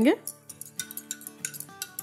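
A spoon clinking against the sides of a glass measuring cup as spices are stirred into warm water, in quick light clicks, over soft background music.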